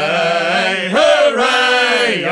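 Male voices singing a sea shanty, holding a long drawn-out note of the refrain; the pitch steps up about a second in.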